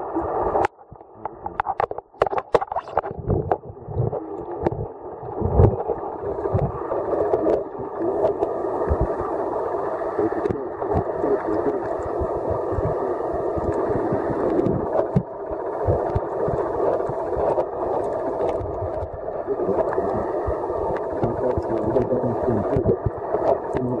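Muffled underwater sound picked up by a submerged camera: a steady rushing noise of water, with irregular knocks and thumps, most of them in the first few seconds.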